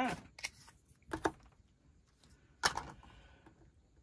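A few light, separate clicks and taps of small plastic miniature pieces being handled, the loudest a sharp click a little over halfway through.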